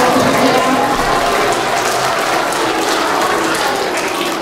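A small crowd clapping steadily.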